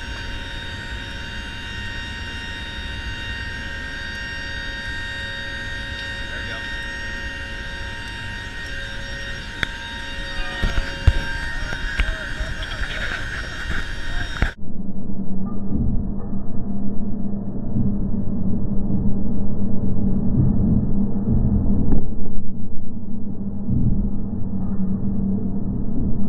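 Cabin noise of a C-130J's four turboprop engines in flight: a steady drone with several steady high whining tones. About two-thirds of the way through it cuts off abruptly into a louder, muffled, fluctuating low rumble.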